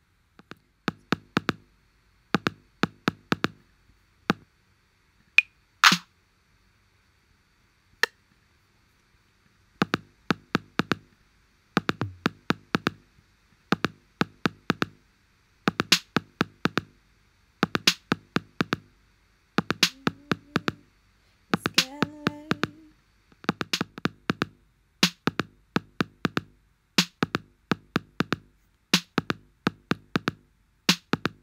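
BandLab drum machine's 808 kit playing a programmed one-bar step pattern of kick and other drum hits. The hits are sparse at first, with a short gap, then loop steadily from about ten seconds in, repeating about every two seconds.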